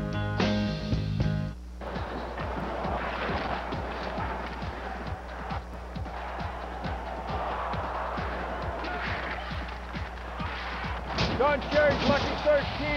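A music jingle ends about a second and a half in, then ice hockey game sound takes over: a crowd's steady din with many sharp cracks and thuds of sticks, puck and bodies hitting the boards.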